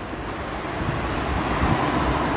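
Rushing water of a flood-swollen river, an even noise that grows gradually louder, with wind buffeting the microphone.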